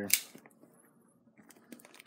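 Plastic shrink wrap on a cardboard box crinkling under a hand: a brief crackle at the start, then near quiet, with faint rustling building near the end as the wrap begins to be pulled open.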